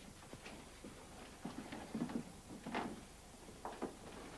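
Irregular footsteps, light knocks and rustling as a person moves about a small room carrying a cardboard box, the loudest knocks about two seconds in and again near three seconds.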